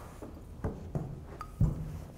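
A few short knocks and thumps of hands and a wooden rolling pin working floured pie dough on a stainless steel table, the loudest thump near the end.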